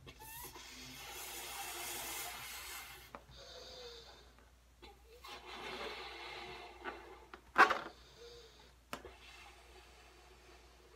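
Long breaths blown into a yellow latex balloon partly filled with water, two long stretches of blowing with a quieter pause between them, with latex rubbing under the hands. A brief loud burst comes about three-quarters of the way through.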